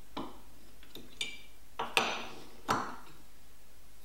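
Metal parts of a block plane clinking and clicking as its lever cap is taken off and the steel blade is lifted out: about five short, sharp clinks, the loudest about two seconds in.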